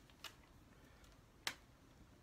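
Near silence with one sharp click from a whiteboard marker about one and a half seconds in.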